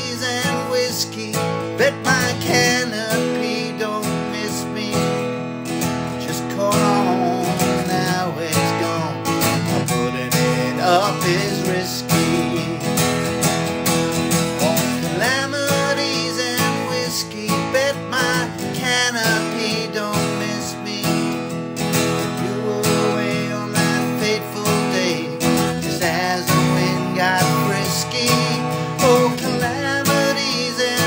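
Acoustic guitar strummed steadily in a country-style song, with a man singing over it in places.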